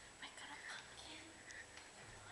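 Faint whispered speech.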